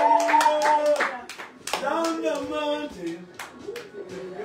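A few people clapping their hands in a steady rhythm, with voices held over it. The clapping stops about a second in, a voice follows, and a few claps come back near the end.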